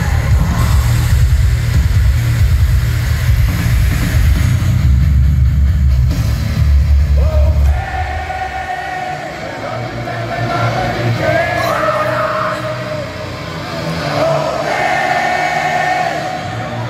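Heavy metal band playing live through an arena PA: a loud, bass-heavy passage that thins out about eight seconds in, leaving quieter held, wavering melodic notes.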